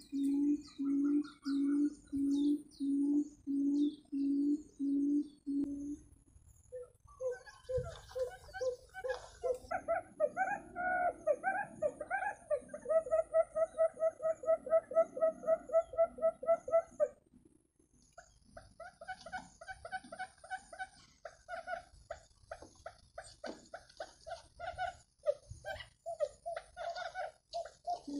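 Recorded quail calls played through a loudspeaker as a trapping lure. The first six seconds are a steady series of low hoots, about two a second. After that come faster, higher-pitched pulsed calls, then sparser, scattered calls near the end.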